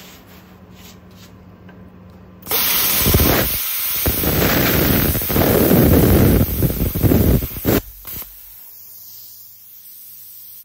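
BESTARC BTC500DP plasma cutter's torch cutting through quarter-inch steel plate at 35 amps, 55 PSI air. A low steady hum comes first. About two and a half seconds in, the loud rushing hiss of the arc starts suddenly and holds for about five seconds. It then drops to a softer air hiss as the post-flow air keeps blowing after the arc stops.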